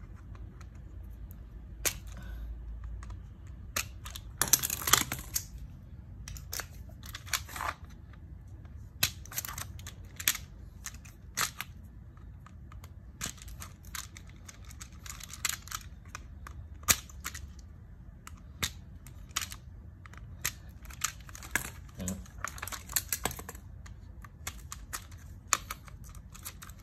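Irregular sharp clicks, snaps and scrapes of a plastic three-pole circuit breaker being handled and worked at with hand tools, over a low steady hum.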